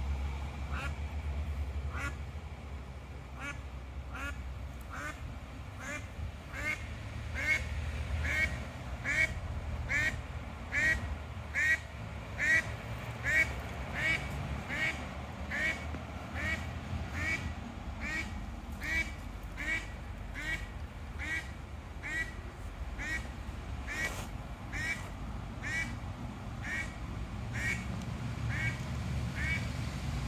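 A duck quacking over and over at a steady pace, about three quacks every two seconds, loudest in the first half.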